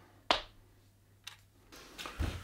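A sharp click, then a fainter click about a second later, over quiet room tone.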